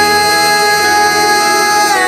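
Slow pop ballad: a male voice holds one long sung note over the accompaniment, and the pitch slides down near the end.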